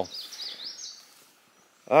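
A songbird singing one short phrase of high, wavering whistles that slide up and down, lasting under a second.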